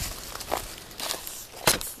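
Footsteps in dry leaf litter and twigs on a forest floor: a few uneven steps, the loudest near the end.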